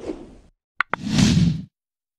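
Outro logo sound effect: a short soft noise, two sharp clicks just under a second in, then a louder burst of noise that stops suddenly.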